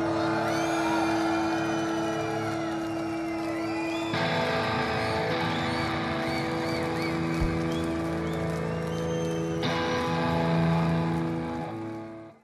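Electric guitar feedback and amplifier drone ringing on after a rock band's final chord: held tones that shift about four and ten seconds in, with short high rising-and-falling whistles over them, fading near the end.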